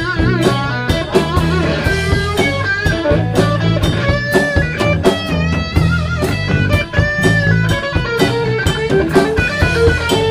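Blues-rock band playing an improvised instrumental jam. An electric guitar plays sustained lead notes with bends and vibrato over a bass guitar line and a drum kit beat.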